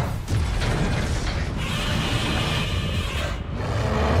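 Dense mechanical clattering and rumbling mixed with music, like an action soundtrack, holding at a steady loud level.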